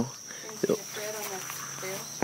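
Steady high-pitched drone of crickets, with a faint click about half a second in.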